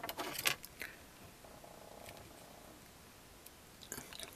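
Small clicks and rattles of metal alligator-clip test leads and coils being handled on a workbench, mostly in the first half second and again near the end, with quiet between.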